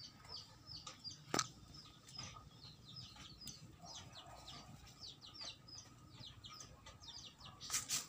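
Birds chirping over and over in short, high, falling notes, with one sharp pop about a second and a half in.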